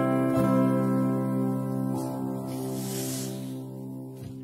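Acoustic guitar playing the last chords of a song, the notes ringing on and slowly fading away.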